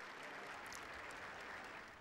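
Faint applause from a crowd of people clapping, steady throughout.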